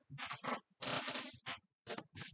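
Handling noise picked up by an iPhone's microphone as the phone is touched and adjusted in its stand: four or five short clattering knocks and rustles with brief gaps between them.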